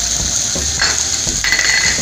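Chopped vegetables and curry leaves sizzling steadily in a kadai, with two short scraping or clinking sounds from the pan, one a little before a second in and a longer one near the end.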